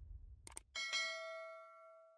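Subscribe-button sound effect: a couple of quick mouse-style clicks about half a second in, then a single bright notification-bell ding that rings out and fades away.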